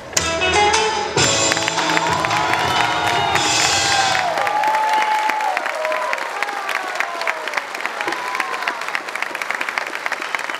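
A rock-and-roll song ends, its bass dying away over the first few seconds, as an audience breaks into applause. High-pitched cheering rides over the clapping for the first six seconds or so, then steady applause continues.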